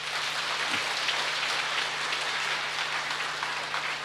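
Audience applauding: dense, even clapping that holds steady for the whole pause, with a faint low hum underneath.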